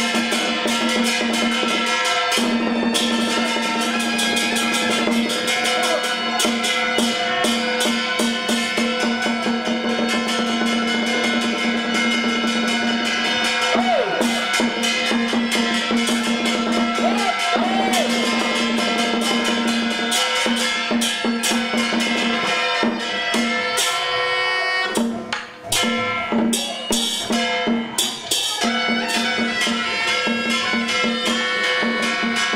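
Taoist ritual music: a sustained wind-instrument melody over rapid drum and hand-cymbal strikes, with a brief dip in the music about 25 seconds in.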